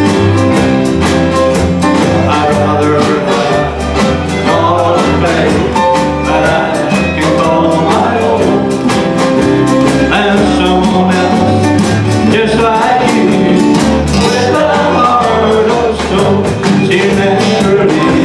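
Live country band playing a song: a male voice singing over strummed acoustic guitar, electric bass, drums and fiddle, with a steady beat.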